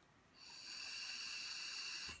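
A drag being drawn through an electronic cigarette (vape mod): a faint, steady high-pitched hiss with a few thin whistling tones, starting about a third of a second in.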